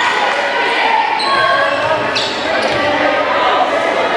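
Volleyball rally in an echoing gym: the ball being bumped and hit, with a sharp hit about two seconds in, over players and spectators calling out throughout.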